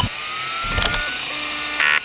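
Sound effects of an old DOS-era PC booting: a click, then a slowly rising whine like a hard drive spinning up over a steady fan hiss, with scattered clicks and a short buzzy burst near the end.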